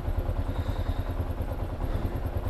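Kawasaki KLR 650's single-cylinder four-stroke engine running slowly at low revs, an even, steady low pulse.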